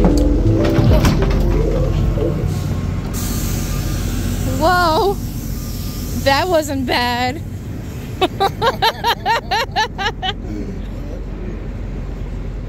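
Low rumble of a city bus under music that fades in the first couple of seconds, then city street noise with brief voices, including a quick run of short vocal sounds near the end.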